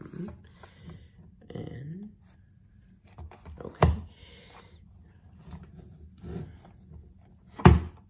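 Small hardcover books being slid out of a cardboard slipcase and set down, with rustling and scraping and two sharp knocks: one about four seconds in and a louder one near the end.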